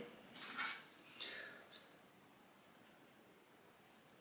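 Faint handling noise from cooked breaded chicken bites being picked up off a parchment-lined baking tray, two soft crackles in the first second or two, then silence.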